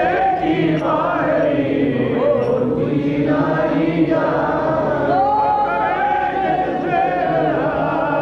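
Sikh kirtan: several men singing a hymn together in a chant-like melody over a sustained harmonium drone, with tabla accompaniment.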